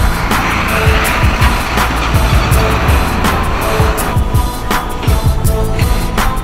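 Background music with a steady beat, over which the rushing noise of a passing car swells and fades away over the first four seconds.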